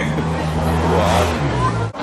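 A motor vehicle's engine running close by, a low steady hum, with a rush of traffic noise swelling about a second in. It cuts off abruptly just before the end.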